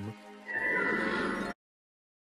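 A cartoon promo soundtrack: a short music-and-effects sting of about a second, with a slowly falling tone. It cuts off abruptly.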